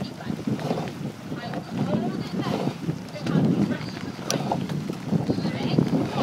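A racing rowing eight passing close by, its oar blades splashing and churning the water stroke after stroke, with wind on the microphone and indistinct shouted calls. A single sharp click about four seconds in.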